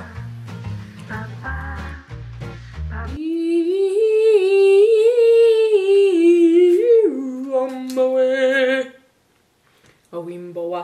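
Background music with a steady beat for about three seconds, then a woman singing long held notes without words that step up and down, ending on a lower held note. The singing stops about a second before the end.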